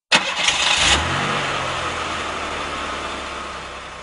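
Car engine sound effect: an engine starts with a sudden burst in the first second, then runs steadily and slowly fades away.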